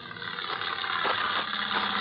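Sound effect of an engine running steadily, fading in and growing louder.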